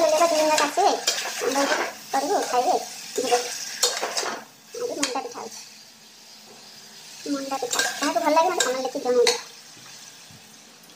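A spatula stirring and scraping chopped bell peppers frying in a steel kadai, with clinks against the pan and a faint sizzle. The scraping comes in two bouts, with a quieter pause in the middle.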